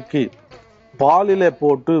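A man speaking, with a short pause about half a second in, over faint background music holding steady tones.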